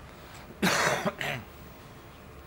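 A person coughing: one loud cough about half a second in, followed at once by a shorter second cough.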